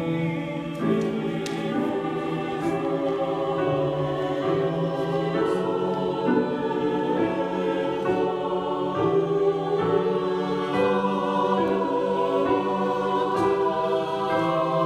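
Mixed choir singing in several parts at rehearsal, held notes moving from chord to chord without a break.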